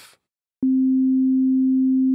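A pure sine-wave tone from the Alchemy software synthesizer. About half a second in it starts with a slight click, then holds one steady pitch with no overtones, the simplest possible sound: one single frequency.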